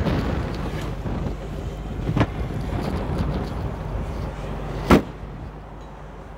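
Shelby GT500's supercharged 5.4-liter V8 idling steadily, with a short knock about two seconds in. Just before five seconds the trunk lid shuts with a sharp thump, after which the idle sounds quieter.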